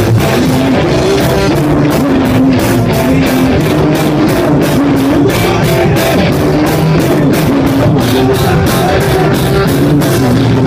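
Live rock band rehearsing: a drum kit and an electric guitar playing loud, with cymbals struck on a steady quick beat.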